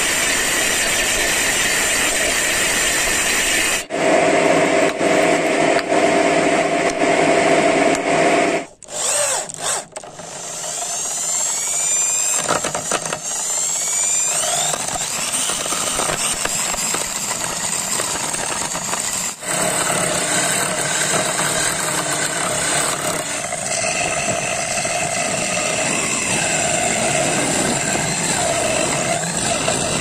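A table saw cutting a block of wood, then a Dongcheng electric drill rigged as a lathe, spinning up with rising whines and running steadily while a chisel scrapes the wooden wheel turning on it.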